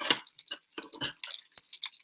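Melted cheese and beef grease sizzling on an electric griddle, with irregular small crackling pops.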